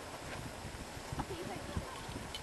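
Faint, indistinct voices of people talking at a distance, over a low irregular background rumble.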